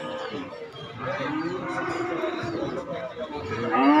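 Cattle mooing: one long, steady moo starting about a second in and lasting about two seconds, then a louder moo beginning near the end.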